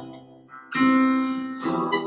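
Acoustic guitar and digital piano playing a slow worship song together. A full chord sounds about three-quarters of a second in, after a brief quiet dip, and another chord comes in near the end.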